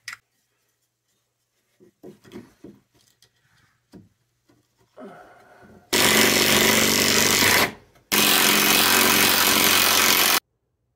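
Craftsman cordless drill/driver driving screws into the wooden bottom board, in two runs of about two seconds each, the first about six seconds in and the second just after eight seconds, with a short pause between. Light handling knocks come before the drill starts.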